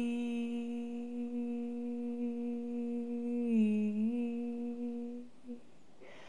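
A woman humming one long, low sustained note, steady in pitch, dipping briefly a little past the middle and stopping shortly before the end.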